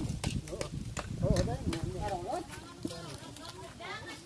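People talking, with many irregular sharp clicks and knocks. The voices fade toward the end.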